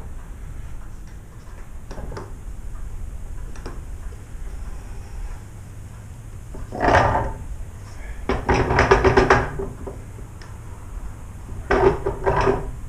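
Wooden screws of a bookbinder's lying press creaking as their wooden handles are turned to clamp the book block. There is a short creak about halfway through, a longer run of rapid creaking soon after, and another creak near the end.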